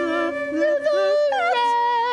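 Improvised wordless singing in a woman's voice, sliding and stepping between notes and breaking into a wide vibrato near the end, over a steady low held note.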